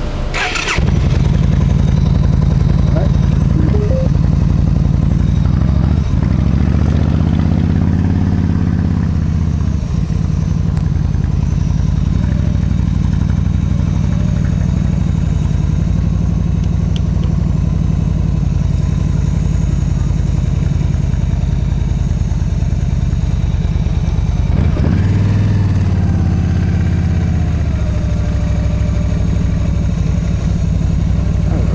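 Yamaha V-Star 1300's V-twin engine pulling away from a stop and running at low speed, picking up revs about six seconds in and again near the 25-second mark.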